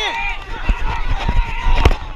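Footfalls and thumps from a body-worn mic on a football player running on grass, with players shouting. A long held call comes in the middle, and a single sharp smack near the end.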